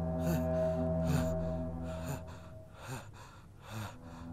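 Background music with sustained held notes, over which a person breathes hard in short gasps, five of them roughly a second apart.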